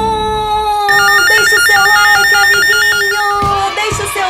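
Electronic jingle: a steady held synthesized tone with a rapid, warbling, ringtone-like trill on top from about a second in until shortly before the end.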